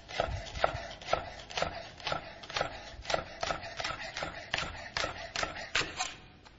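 Kitchen knife slicing spring onions on a chopping board: a steady run of knocks, about three or four a second.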